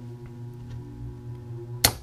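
240 V HVAC blower motor running backwards with its run capacitor removed, giving a steady electrical hum. Near the end a sharp click as the switch is turned off, and the hum cuts out.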